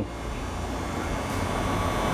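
Steady background hum and hiss with no distinct events: room noise between spoken lines.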